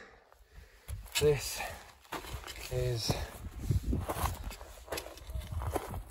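A hiker's footsteps on a loose volcanic gravel and rock trail, uneven scuffs and knocks one after another. A few short vocal sounds from the climber come about a second in and again around three seconds.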